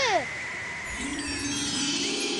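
Cartoon magic-sparkle sound effect: a shimmering, wind-chime-like tinkle of many high tones, with soft held music tones coming in about halfway through, used as a dreamy scene-transition cue.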